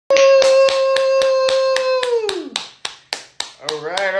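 Hands clapping in a steady rhythm, about four claps a second, under a long held "woo" cheer that falls away about two seconds in; the claps then thin out.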